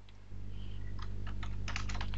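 Typing on a computer keyboard: a quick run of keystrokes starting a little before halfway through, over a low steady hum.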